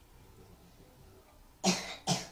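Near silence, then a man coughs once near the end.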